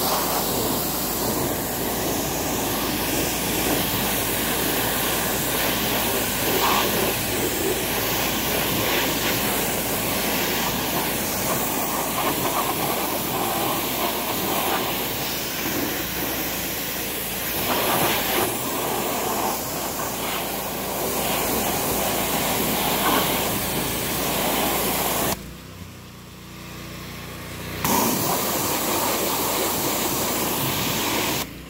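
Pressure washer jet spraying steadily onto a zero-turn mower's deck, rinsing off soap and packed-on grass. The spray cuts off for about two seconds near the end, then starts again.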